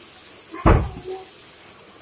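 A single heavy thump about two-thirds of a second in, followed by a softer knock, over the faint steady hiss of diced capsicum and onion frying in a kadai.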